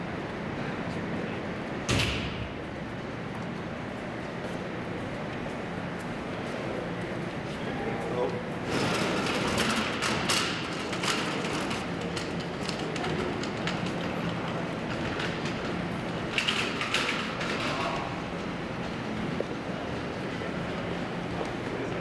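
Corridor ambience of indistinct voices and footsteps, with one sharp thump about two seconds in and quick bursts of sharp clicks near the middle and again about three-quarters through.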